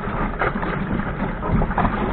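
Wind buffeting the microphone over a sailing dinghy moving fast through choppy water, with several short splashes of waves against the hull.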